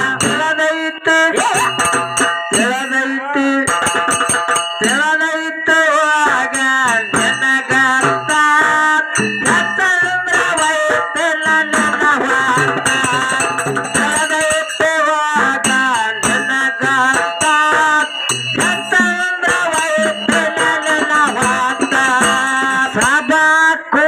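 Live Kannada folk song sung through a PA microphone: a woman's voice carrying the melody over harmonium, with sharp hand-percussion strokes throughout.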